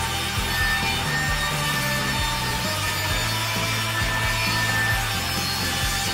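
Table saw ripping a wooden board, a steady cutting noise as the board is fed through the blade.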